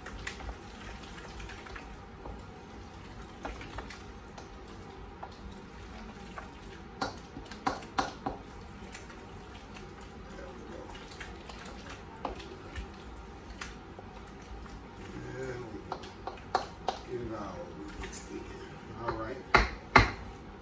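Wooden spoon stirring a thick, wet mix of chicken, cheese and canned cream soup in a stainless steel mixing bowl, with scattered knocks of the spoon against the bowl. The loudest knock comes at the very end.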